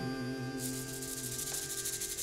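A plastic baby bottle shaken fast like a shaker: a rattling hiss comes in about half a second in. Under it, the last acoustic guitar chord rings out and slowly fades.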